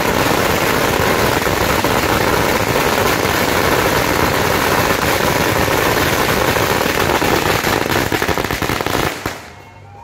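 A long string of firecrackers going off in a dense, rapid crackle, then stopping abruptly about nine seconds in.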